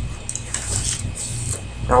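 Soft hissing breaths over a steady low electrical hum.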